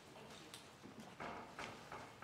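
A few faint footsteps of a person walking across a hard floor.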